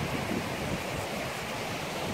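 Steady rush of a fast-flowing, silt-grey glacial river running past a rocky bank, with wind buffeting the microphone in low rumbles.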